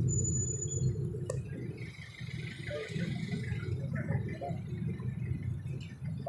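Low, steady rumble of a vehicle riding through street traffic, with faint scattered higher sounds over it.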